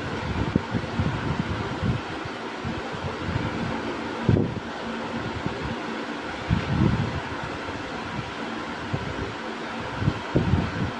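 Steady background hiss with irregular low rumbling bumps, while thick cake batter is poured from a plastic bowl into a paper-lined cake tin and scraped out with a spoon. There is a soft knock about four seconds in and a cluster of bumps near seven seconds.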